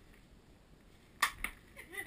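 A Nerf blaster firing a foam dart: one sharp snap about a second in, followed a moment later by a fainter click.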